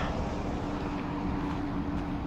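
A steady rush of outdoor noise with a faint, even hum underneath.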